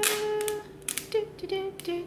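A woman sings a wordless 'do do' tune under her breath: one held note, then a few short notes. Clear vinyl transfer tape crackles as it is slowly peeled off a plastic container.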